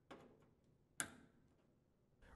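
A single sharp plastic click about a second in as a washer's wire harness connector snaps into its socket, with a faint handling sound near the start.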